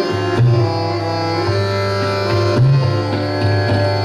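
Hindustani classical accompaniment: a steady tanpura drone and held harmonium notes, with two deep tabla strokes, about half a second in and again near the middle.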